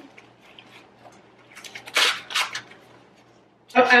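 Crinkly rustling of paper and packaging being handled, a short burst of crackles about two seconds in. A woman's voice starts near the end.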